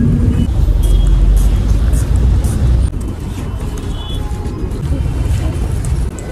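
City street traffic noise with a heavy low rumble, loudest for the first three seconds and then a little quieter, with background music laid over it.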